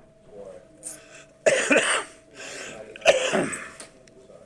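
A person coughing: two loud coughs about a second and a half apart, each trailing off quickly, with a softer sound before the first.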